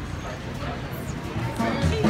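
Chatter of a busy market crowd, with street musicians' folk music coming in near the end as low bass notes rise out of the crowd noise.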